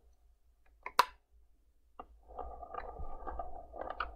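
A sharp click about a second in, with another at about two seconds, as parts of a 1:18 diecast model car are pressed shut. This is followed by a couple of seconds of rough rattling as the model is turned on its display turntable.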